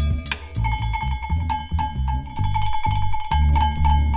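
Electronic dance music mixed live by a DJ: a steady, heavy bass beat with a fast run of short, high-pitched percussive notes that starts about half a second in.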